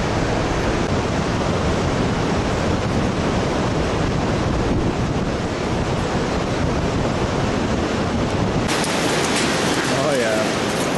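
Wind buffeting the microphone: a steady, loud rush with a deep rumble. About nine seconds in, the rumble drops away and a brighter, steady hiss is left.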